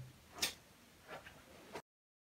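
A sharp click about half a second in and a few fainter ticks around a second in, over a low room hush; the sound then cuts off to dead silence near the end.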